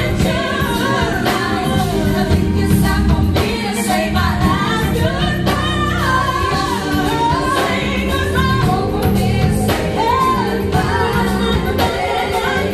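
A woman singing a contemporary R&B song live into a microphone, with held, wavering notes, backed by a band with electric guitar, drums and keyboards.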